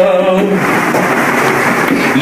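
A man singing a Tamil song holds a long note, then breaks off about half a second in. A rushing, hiss-like noise follows for about a second and a half, and the singing starts again near the end.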